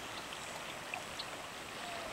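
Steady rushing of a wide, fast-flowing river's current.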